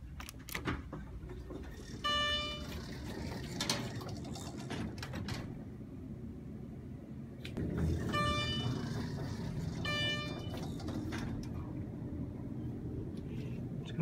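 EPCO elevator chime sounding a single electronic tone three times, each about half a second long and at the same pitch: once about two seconds in, then twice more about two seconds apart near the end.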